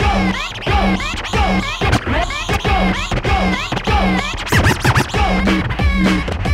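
Vinyl records scratched by hand on Technics turntables over a beat. Repeated back-and-forth scratch strokes sweep up and down in pitch in time with the beat, with a rapid flurry of short strokes near the end.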